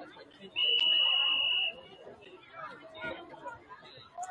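A football referee's whistle blown once: a single high, steady tone lasting a little over a second, over crowd chatter.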